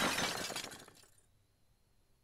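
Logo-reveal sound effect: a sudden crash, loudest at the start, that breaks up and dies away over about a second.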